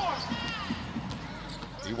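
Basketball court sound on hardwood: a few high sneaker squeaks and the ball bouncing, over low arena noise.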